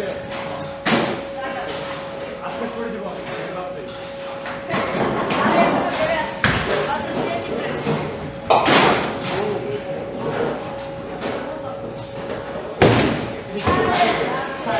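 Bowling alley sounds: about four sharp knocks and crashes from bowling balls landing and rolling on the lanes and hitting pins, the loudest two in the second half, over background chatter and a steady thin tone.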